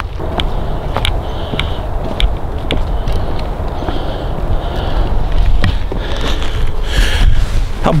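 Footsteps crunching through dry fallen leaves and rail ballast at a walking pace, about two steps a second, over a loud low rumble on the microphone.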